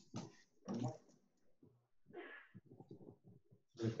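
A quiet pause in a video-call audio feed with a few brief, soft voice sounds and several faint light clicks, then a spoken "okay" at the very end.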